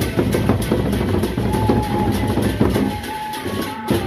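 Sasak gendang beleq ensemble playing: large double-headed barrel drums beaten with sticks in a dense, fast rhythm of many quick strokes, with a held high tone wavering over the top.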